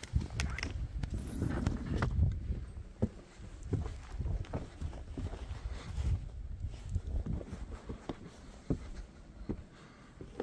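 Footsteps in snow: irregular soft crunching thumps from someone walking on a snow-covered deck, over a low rumble of wind on the microphone.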